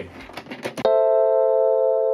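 A few faint quick clicks from the Perfection game's timer being wound. Then, just under a second in, a sustained electric-piano chord begins suddenly and is held.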